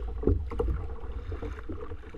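Kayak on the sea: irregular paddle splashes and knocks over a steady low wind rumble on the microphone.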